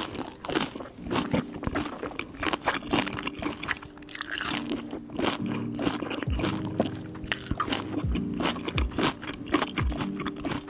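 Close-miked eating sounds of napa cabbage kimchi being bitten and chewed: a dense, irregular run of crisp crunches and small clicks.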